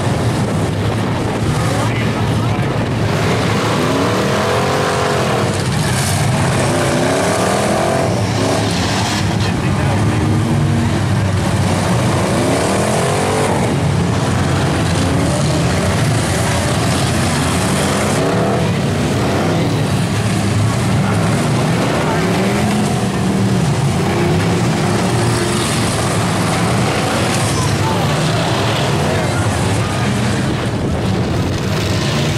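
Many demolition derby car engines running and revving hard together, rising and falling in pitch again and again, with a few sharp bangs of cars crashing into one another.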